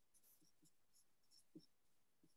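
Near silence, with faint squeaks and scratches of a felt-tip marker writing on a large paper pad, the clearest about one and a half seconds in.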